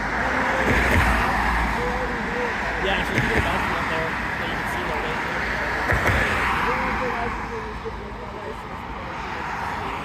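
Cars passing on the road, their tyre and engine noise swelling and fading, loudest about a second in and again about six seconds in, then easing off.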